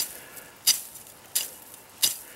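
Blunt tip of a Spartan knife swishing through light, dry grass stems in quick repeated strokes, about two-thirds of a second apart. The tar-blunted edge pushes the grasses aside and leaves them uncut.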